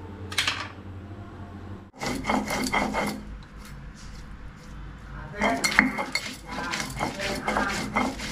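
A stone roller crushing and grinding onions and spices on a flat grinding stone (sil-batta): a quick run of knocking, scraping strokes, then a pause, then a longer run. Just before this, near the start, there is a brief click from cutting chillies with a knife on tile.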